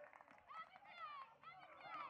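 Faint, indistinct shouting of lacrosse players on the field: a few short calls that rise and fall in pitch.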